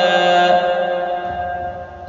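A reciter's voice chanting Quran, holding the drawn-out final vowel of 'afwaja' on one steady pitch, which fades away near the end.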